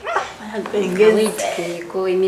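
A woman speaking in conversation; no other sound stands out.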